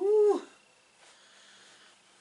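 A cat meowing once, briefly, the call rising and then falling in pitch.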